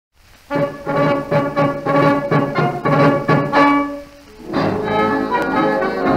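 Instrumental opening of a tango played by a band with brass: short, repeated chords at a brisk march-like pace, then a brief drop and held chords about four and a half seconds in.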